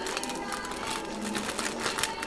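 A plastic food packet crinkling in the hands as it is pulled open: a dense run of small crackles.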